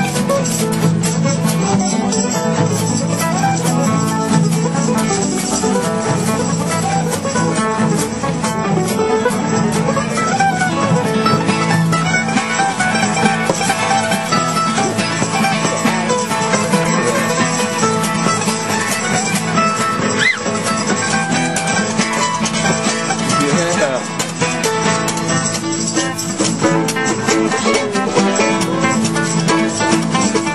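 Acoustic bluegrass jam: a mandolin and acoustic guitars picked and strummed together in a steady rhythm.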